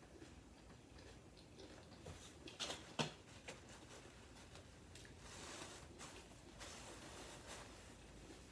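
Faint chewing of nacho chips, with a few sharp crunches clustered near the middle and a soft breathy hiss in the last few seconds.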